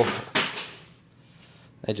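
A set of keys dropped, giving a brief clatter about a third of a second in that fades quickly.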